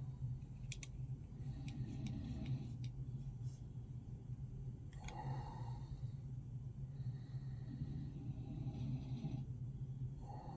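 Light clicks and scrapes of a steel caliper's jaws sliding and closing on a brass rifle case, with a sharp double click a little under a second in, over a steady low hum.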